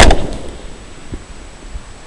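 A single suppressed rifle shot: a sharp, loud crack that dies away within about half a second, with a faint thump about a second later.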